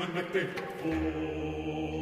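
Contemporary vocal ensemble in a piece for seven voices and bass clarinet: quick, chopped, speech-like vocal syllables, then about a second in a sustained chord of several voices held steady over a low drone.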